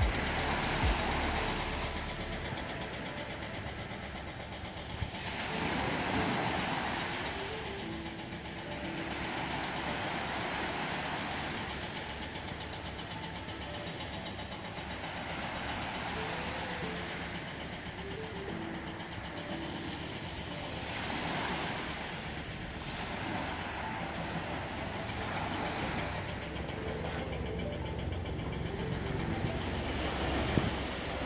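Small waves breaking and washing up a sandy beach, swelling and ebbing every four to six seconds over a low steady rumble.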